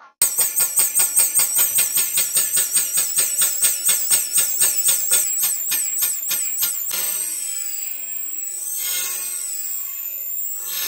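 Marine steam engine, double-acting, started up on steam or compressed air: its exhaust chuffs come fast and even, about five or six a second, and quicken until they merge into a steady hiss with slow swells as the engine picks up speed.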